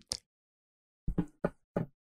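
Hammering in the apartment below, heard through the floor: a quick run of four sharp knocks starting about a second in, from a new neighbour hanging shelves.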